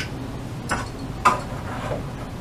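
A few light clicks and knocks as cupping cups are picked up and handled on a shelf, the loudest about a second and a quarter in.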